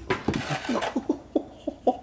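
Hard plastic toy parts knocking and clicking together as they are handled, a quick run of about eight light taps.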